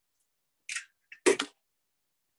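Raw egg being cracked by hand: two short crunches of eggshell, a softer one under a second in and a louder one about a second and a quarter in.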